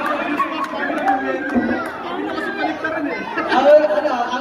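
Several people chattering and talking over one another in a large hall, with one voice rising louder about three and a half seconds in.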